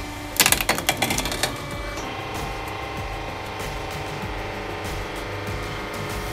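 A rapid flurry of sharp cracks and snaps lasting about a second, shortly after the start, from the load of pens and fruit giving way under a homemade 150-ton hydraulic press. Background music plays throughout.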